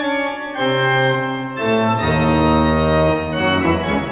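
Church pipe organ playing loud sustained chords that change about four times, with a deep pedal bass coming in about two seconds in. The last chord is released at the end.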